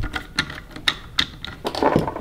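Sharp clicks and taps, about half a dozen at an uneven pace, from an AR-style rifle and its bipod being handled with a tool as the bipod is worked loose.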